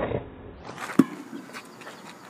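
A rubber playground ball being caught in both hands with a single sharp slap about a second in, after its one bounce on the court.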